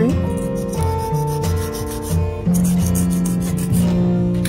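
Background music, with a flat nail file rubbing back and forth along a stiletto nail tip.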